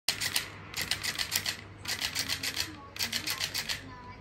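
Electric flopping fish toy's tail slapping against a hard tabletop in four quick bouts of rapid clicking taps, about seven a second.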